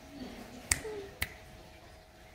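Two crisp finger snaps about half a second apart, made by hand to show a primate on the other side of the enclosure glass how to snap.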